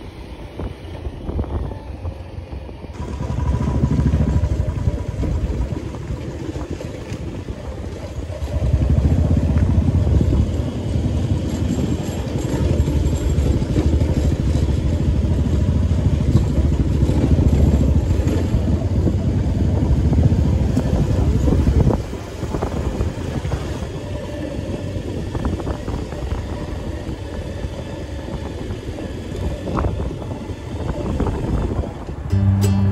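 Motorcycle riding along a road, its engine and rush of wind heard from the pillion seat, with wind buffeting the phone microphone. The noise swells for a couple of seconds early on, then again for most of the middle, and drops back about two-thirds of the way through.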